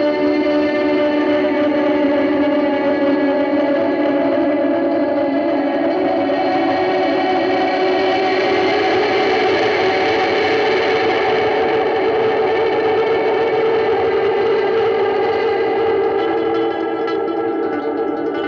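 Electric guitar played through Chase Bliss Automatone effects pedals: sustained, overlapping notes that ring together, the chord shifting upward about halfway through.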